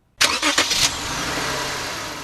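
A Lexus GS 300 sedan's engine starting: a sudden loud burst as it cranks and catches about a quarter second in, then settling into a steady idle that slowly fades near the end.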